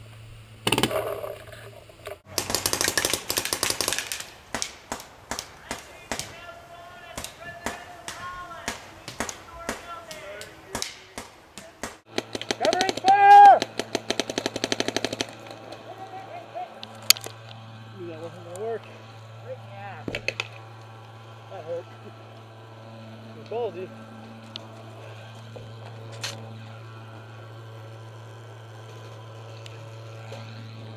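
Paintball markers firing in fast strings of shots through the first half, with a loud shout midway. After that, only scattered single shots and distant shouts over a low steady hum.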